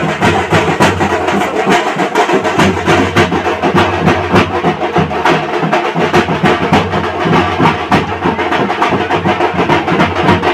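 Loud wedding band music: fast, dense drumming over a held melody line.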